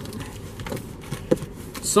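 Large cardboard box being handled and turned over in the hands, with a few light knocks and rustles against a low steady background hum.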